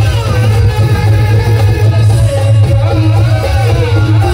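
Live qawwali music through microphones: a male lead singer's voice gliding in long melismatic lines over harmonium and drum accompaniment.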